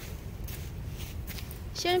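Faint outdoor background with a low rumble and a few soft clicks, then a woman starts speaking near the end.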